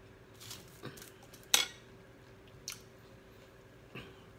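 A fork scraping and tapping through fried rice on a foil-lined tray: a few short scrapes, with one sharp click about a second and a half in.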